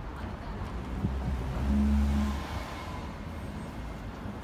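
A motor vehicle's engine passing close by in the street, swelling to its loudest about two seconds in and then fading, over a steady traffic rumble.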